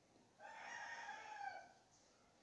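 A faint, drawn-out animal call in the background: one pitched note lasting a little over a second, dipping slightly at the end.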